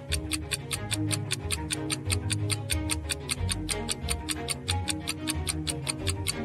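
Stopwatch-style countdown ticking, fast and even at about six ticks a second, over background music with a low bass line.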